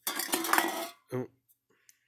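Empty aluminium drink cans clattering and clinking against one another for about a second as a can is put back among them and the pile jostles.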